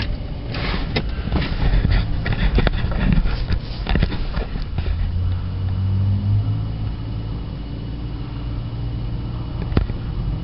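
A vehicle engine's low, steady hum and rumble, heard from inside a car, with a run of clicks and knocks over the first half that then settles into a smoother drone.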